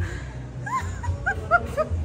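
A small dog whimpering: about five short, high yips that rise and fall in pitch, coming in quick succession in the second half.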